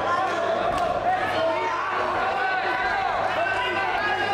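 Many voices shouting over one another around a kickboxing ring, with a few sharp smacks of strikes landing, the clearest about a second in.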